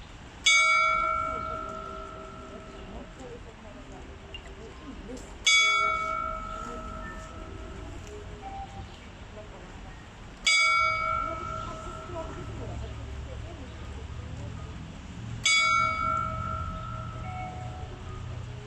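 Small clock-tower bell struck by the tower's mechanical figure: four strikes about five seconds apart, each ringing out and slowly fading. It is striking twelve for noon.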